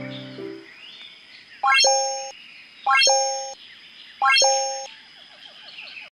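Three identical electronic chime sound effects, each a quick rising run of notes ending in a held two-note ding, about a second and a half apart. The background music fades out just before the first chime.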